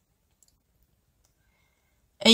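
Near silence, with only a couple of very faint ticks.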